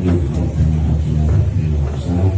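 A man chanting an Arabic prayer of supplication (doa) in a low, melodic voice, holding each note briefly before moving to the next.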